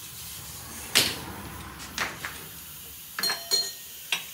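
Metal knocks and clinks from hands and tools on a car's rear suspension parts: a sharp knock about a second in, a couple of lighter clicks around two seconds, and two clinks that ring briefly near the end, over a faint steady hum.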